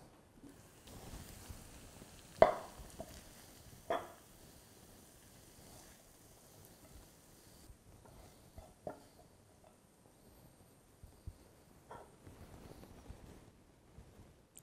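A serving utensil knocking a few times against cookware while keema is dished onto a plate. There are four short clinks, the loudest about two seconds in, with soft handling noise between them.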